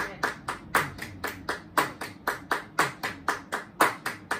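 Several people clapping their hands in time, a steady beat of about four claps a second with a stronger clap roughly once a second: hand-clapping practice to keep a 16-beat rhythm accurate.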